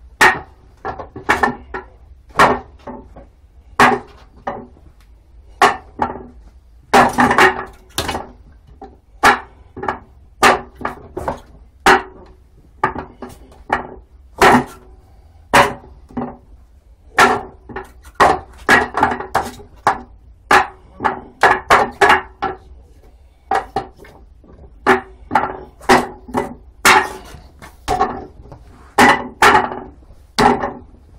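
Hands and forearms striking the wooden arms and trunk of a Wing Chun wooden dummy (muk yan jong) in a fast, irregular series of knocks, some in quick clusters, each with a short wooden ring.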